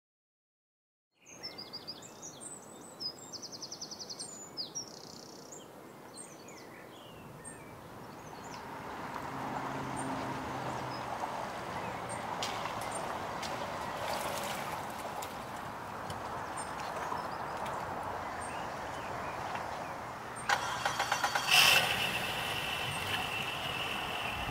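Birds chirping over a steady outdoor vehicle rumble at a boat ramp that grows louder about a third of the way in. Near the end a louder Suzuki four-stroke outboard engine comes in, running with a high whine.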